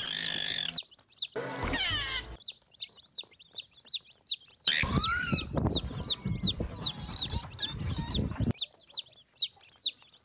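Chicks peeping over and over, each peep a short high falling note, about three a second, played as a lure call for monitor lizards. Louder, rougher bursts of sound cut in at the start, around two seconds in, and again from about five to eight and a half seconds.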